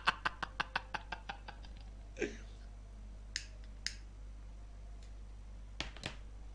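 A man's laughter trailing off in quick, fading pulses over the first second and a half. Then a few faint, sharp knocks follow, spaced apart.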